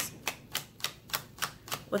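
A deck of fortune-telling cards being shuffled by hand: a steady run of crisp taps, about four a second.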